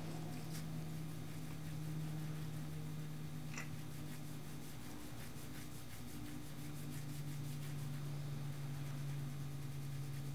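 Steady low electrical hum of room tone, with a couple of faint light ticks.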